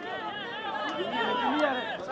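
Several voices shouting and calling over one another during a football match, from players and onlookers, growing louder about a second in.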